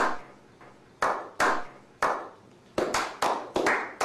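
A slow clap from a small group of men: single sharp hand claps that ring out and die away, about a second apart at first, then quickening to several a second near the end.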